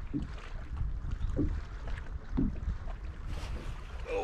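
Small waves lapping against a boat hull, a soft slap about once a second, over a low wind rumble on the microphone.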